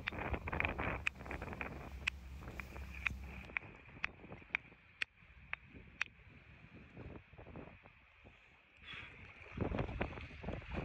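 Hammer tapping a stone nodule to split it open and expose the ammonite inside: sharp taps about two a second, stopping about six seconds in.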